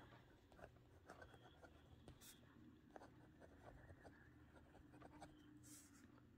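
Faint scratching of a pen writing by hand on lined notebook paper, in short irregular strokes.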